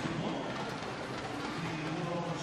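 Steady wash of noise from an indoor swimming-pool arena during a race, with swimmers' splashing blended into the hall's ambience.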